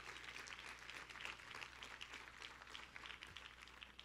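Faint scattered applause from a congregation, many light irregular claps, fading slightly toward the end.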